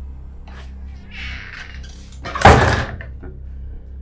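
A wooden front door being pushed shut, closing with one loud thud about two and a half seconds in.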